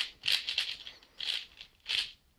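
A 4x4 speed cube being turned quickly by hand, its plastic layers clicking and rattling. There is a fast run of turns in the first second, then two short single turns near the end, as the inner-slice moves of the 4x4 PLL parity algorithm are worked through.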